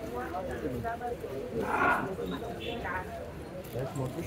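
Background street chatter: voices of people talking nearby over the low hum of a busy city street.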